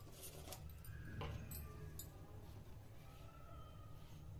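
Curry gravy simmering in an aluminium kadhai on a gas stove: a faint low hum with scattered small pops and clicks.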